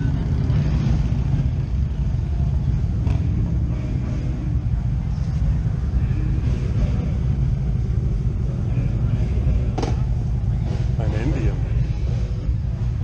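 Motorcycle engines running, a steady low rumble, with people talking in the background.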